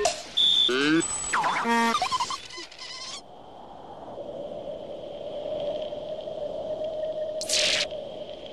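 Electronic sci-fi sound effects, laser-like zaps and quick gliding tones, for about the first three seconds. Then a vacuum cleaner's motor runs steadily with a high whine over its drone, slowly growing louder, with a short hiss near the end.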